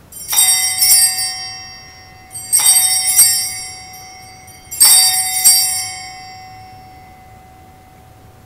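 Altar bells rung three times, about two seconds apart, each ring a quick double shake of bright, overlapping tones that ring on and fade away. They are the signal for the elevation of the chalice at the consecration.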